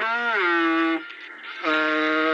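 Singing: one long held note that slides down into place, breaks off about halfway through, and a second long note starts near the end.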